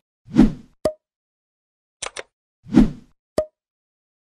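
Subscribe-button animation sound effects: a soft pop followed by a sharp click with a brief ringing tone, then a quick double mouse click, another pop and another click with a short tone.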